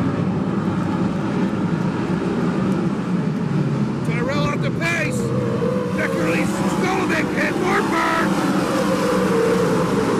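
A pack of sprint car V8 engines running together as the cars circle the dirt oval, a steady drone. From about four seconds in, nearby voices shout over it for a few seconds.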